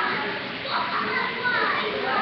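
Many young children's voices at play, a busy chatter with short high calls rising and falling over one another.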